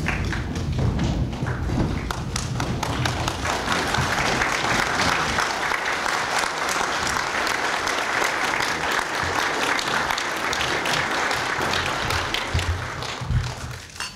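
A roomful of dinner guests applauding, the clapping thickening a few seconds in and thinning out near the end.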